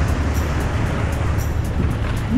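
Steady rumbling wind and water noise on an action camera's microphone as choppy, breaking waves rush around a kayak. Faint background music with a steady beat sits under it.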